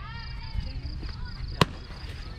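A single sharp crack of a softball bat hitting the ball, about one and a half seconds in.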